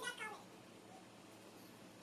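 A cat gives one short meow right at the start, followed by quiet room tone.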